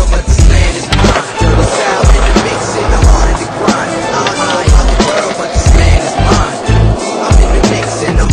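Hip hop beat with heavy bass hits, and over it skateboard wheels rolling on concrete and a board grinding a concrete ledge.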